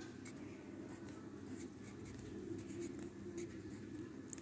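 Pencil writing on a workbook page: faint, short scratching strokes as letters are written one after another.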